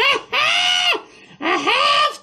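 A man's voice letting out high-pitched falsetto cries with no words: a short one at the start, then two long ones about half a second each, each rising and then falling in pitch.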